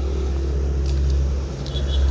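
Kubota EA11 single-cylinder diesel engine idling with a steady low rumble.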